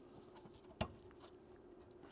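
A brass retaining clip being worked onto the metal fan-shroud bracket of an aluminium radiator: faint small ticks of handling and one sharp click a little under a second in.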